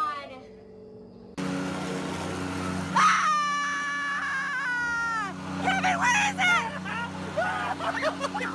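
A man gives a loud, high-pitched scream of about two seconds, three seconds in, that drops in pitch as it ends, then breaks into shorter shouts and laughter. A steady low hum runs underneath from the cut onward.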